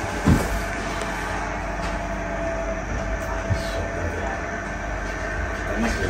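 Steady low mechanical hum of a wall-mounted split air conditioner running, with a short thump just after the start and a light knock about halfway through.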